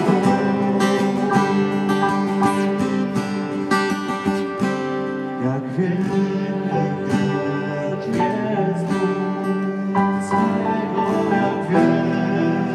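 Worship music played on strummed acoustic guitar, with singing.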